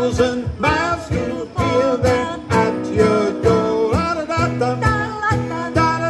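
Two voices, a man's and a woman's, singing together over a strummed acoustic guitar, the strums about twice a second.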